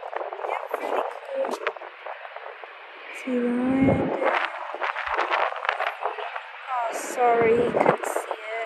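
Voices talking, strongest a few seconds in and again near the end, over a steady background noise.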